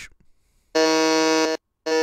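Game-show buzz-in sound effect: two identical steady electronic tones, each just under a second long with a short gap between, signalling that a player has buzzed in to answer.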